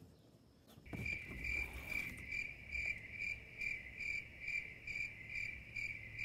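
A cricket chirping steadily, a clear high chirp repeating about two to three times a second, starting about a second in.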